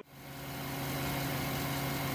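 Car engine running at a steady, even hum, fading in over about the first half-second: the animated scene's sound of driving inside a car.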